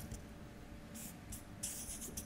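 Marker pen drawing on flipchart paper: a short scratchy stroke about a second in and a longer one near the end.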